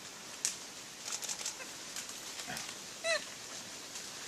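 Scattered light crackles and rustles, as of dry leaf litter being disturbed. About three seconds in comes one short, clear animal call, the loudest sound.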